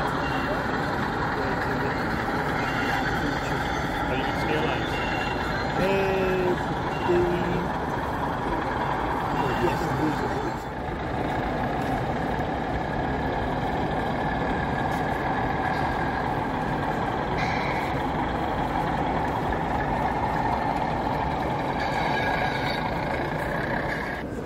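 Steady murmur of many voices in a large exhibition hall, with a constant engine-like running sound underneath. Short high beeps recur during the first ten seconds.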